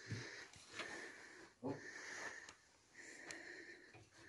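Faint, heavy, wheezy breathing close to the microphone: four breaths about a second apart, each with a hissy whistle to it. Two soft low thuds come near the start and about a second and a half in.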